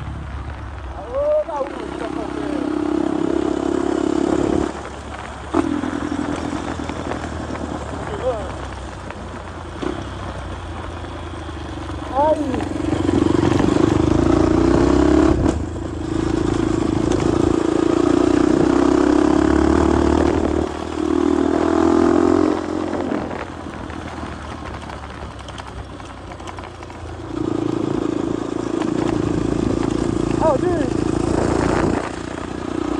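Motorcycle engine heard from on board on a dirt road. It pulls hard in spells of a few seconds and eases off between them as the throttle opens and closes.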